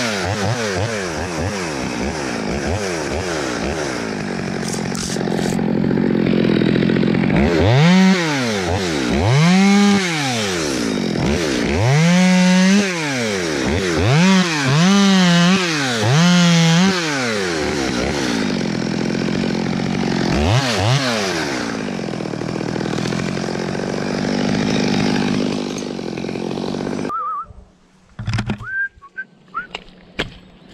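Top-handle chainsaw running in a tree, revved up and let fall back again and again while cutting limbs, then shut off suddenly about 27 seconds in. A few faint clinks follow.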